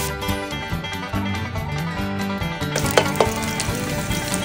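Background music with plucked, banjo-like notes, and a couple of sharp clicks about three seconds in.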